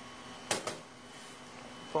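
A ceramic plate set down on a stainless steel counter: a sharp knock about half a second in, followed closely by a lighter second knock.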